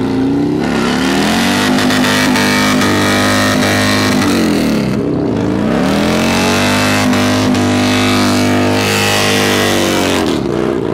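Cruiser motorcycle doing a burnout: the engine is held at high revs with the rear tyre spinning on the asphalt, and the revs drop and climb back up about halfway through.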